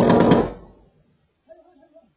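A single loud, sudden bang that dies away over about half a second, picked up by a car dashcam's microphone from inside the car.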